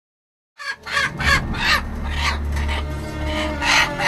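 Chickens squawking in short, repeated cries, starting about half a second in, the loudest near the end, over a low steady hum.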